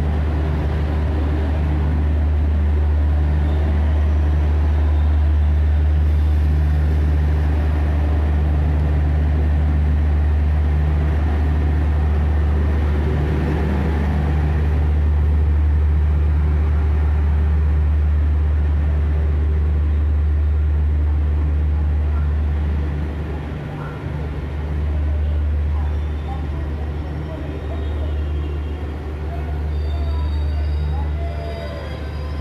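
Passenger train rolling slowly along a station platform, heard from on board: a loud, steady low rumble that weakens and wavers from about three-quarters of the way in.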